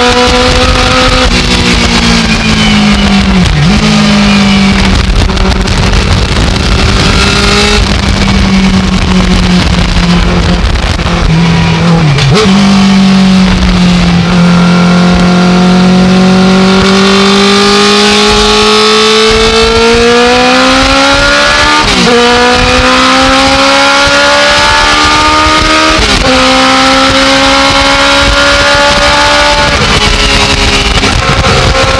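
Legend race car engine heard from inside the cockpit, running hard at speed. The revs fall away as the car slows for a corner about twelve seconds in, then rise steadily as it accelerates out, with two quick drops in pitch near the end as it shifts up.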